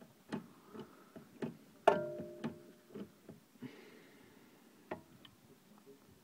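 Metal clicks and knocks from a spanner working the handbrake lever on a rear brake caliper, a lever that does not spring back on its own. There are about half a dozen irregular clicks, with one loud ringing clank about two seconds in.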